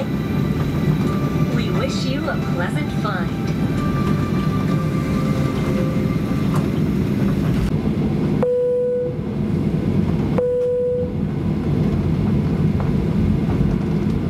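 Steady low rumble inside the cabin of a Boeing 737-800 taxiing. Past the middle, the cabin PA chime sounds twice, two single 'pōn' tones about two seconds apart, signalling the cabin crew's takeoff announcement.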